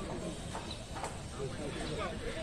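Spectators murmuring and chatting at a distance, with a couple of faint sharp taps, one at the start and one about a second in.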